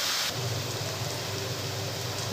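Chopped onions sizzling in hot oil in a frying pan, a steady frying hiss. About a third of a second in, the sizzle changes abruptly, with less hiss, and a low steady hum comes in underneath.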